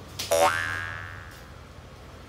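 Comedy 'boing' sound effect: a quick upward pitch sweep that settles into a ringing tone and fades away over about a second and a half.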